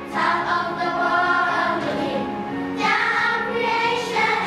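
A group of primary-school children singing an English song together in chorus, with musical accompaniment.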